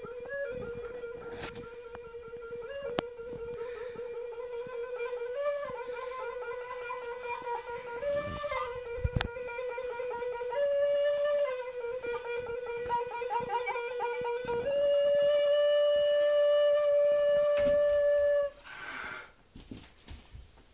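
Plastic recorder playing a slow, wavering snake-charmer-style tune that hovers on one low note with short steps up, ending on a long loud held note that stops abruptly a second or two before the end. A short noisy sound follows just after.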